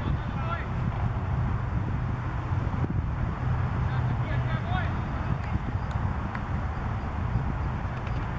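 Distant voices calling out across a cricket field, faint and brief, over a steady low rumble of outdoor background noise.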